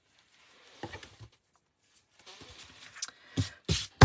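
Card stock and craft materials handled on a tabletop: soft rustling and scraping, then two sharp knocks near the end.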